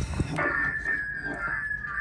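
A sharp click, then a steady high-pitched whistle from the CB radio setup as the restored Uniden Grant XL is keyed and a nearby receiver picks up its signal.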